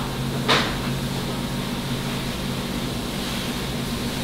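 Steady low machine hum of room equipment, with one short sharp click about half a second in.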